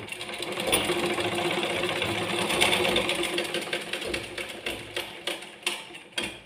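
Black straight-stitch sewing machine stitching cloth: a fast steady rattle of the needle and mechanism with a steady hum. It slows after about four and a half seconds into a few separate clicks as it stops.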